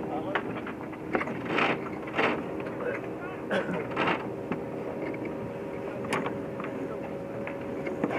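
Wind and rushing water aboard a sailboat under way, with a steady low hum underneath and a few sharp knocks scattered through.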